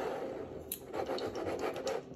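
Metal screw-top lid of a glass pickle jar being twisted open by hand: a continuous scratchy grinding of lid on jar threads, with a few small clicks.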